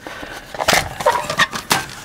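Pressed-steel tool tin of a Roper Whitney No. 5 Jr. hand punch set being unlatched and its lid opened: several sharp metallic clicks and rattles with some scraping.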